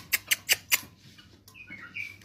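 Five quick, sharp clicks in the first second, then a short, high chirp from a pet bulbul near the end.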